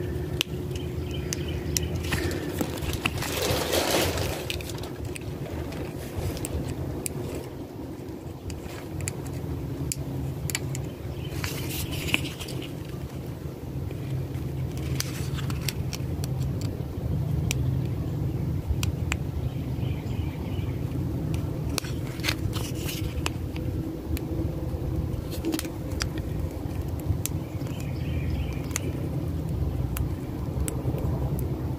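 Round vinyl sticker and its paper backing handled and picked at by fingers, giving scattered small clicks, crackles and scrapes, with a few longer rustles as the backing is worked loose. A steady low rumble runs underneath.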